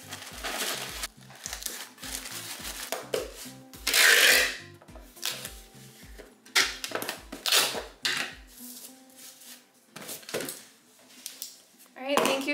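Electronic dance music with a steady kick drum, about three beats a second, that drops out about eight and a half seconds in. Over it, packing tape is pulled off a handheld dispenser to seal a cardboard box, with a loud tearing rip about four seconds in and shorter rips after.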